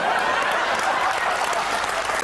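Audience applause mixed with laughter, a dense, even clatter of many clapping hands, in reaction to a joke's punchline.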